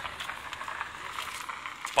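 Quiet outdoor background hiss with a few faint scattered ticks.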